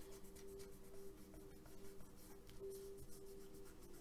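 Fingertips rubbing and pressing paper flat onto a glued postcard: faint, irregular scratchy rubbing of paper, over a faint steady hum.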